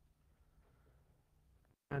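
Near silence: faint room tone in a pause between a man's sentences, with his speech starting again at the very end.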